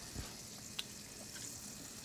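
Faint, steady sizzle of butter and oil heating in a hot skillet on a gas range, with a soft knock about a quarter-second in and a light click near the middle.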